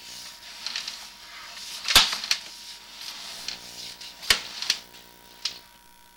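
Sewer inspection camera being pushed down a sewer line: two sharp knocks, about two and four seconds in, and a few lighter clicks as the camera head and push cable move through the pipe, over a steady electrical hum from the camera equipment.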